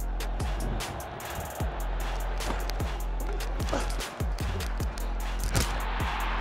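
Background music with a steady deep bass and a beat, over crowd noise that swells near the end.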